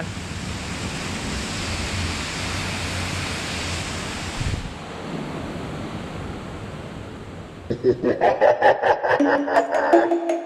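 Steady rushing noise, which drops away sharply about five seconds in and leaves a quieter hiss; near the end, music with a quick beat starts.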